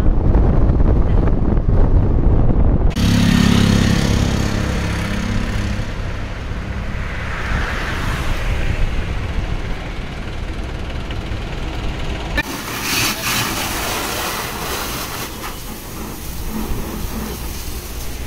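Low road and wind rumble from a moving car for the first few seconds, then a steady vehicle-engine and traffic hum. In the last third comes the hiss of a high-pressure water jet spraying a car at a car wash.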